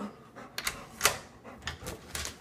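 Several short, sharp clicks and knocks, the loudest about halfway through, as of hard objects being handled at close range.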